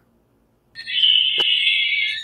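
A loud, shrill, steady alarm-like tone that starts about three-quarters of a second in and holds for about a second and a half, with a single sharp click near its middle, then cuts off suddenly.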